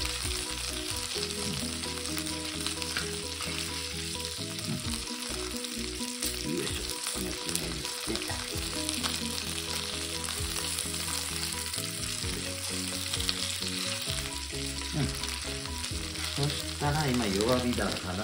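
Chicken pieces sizzling in butter in a frying pan over low heat, a steady frying hiss. Chopsticks click against the pan now and then as the pieces are turned over.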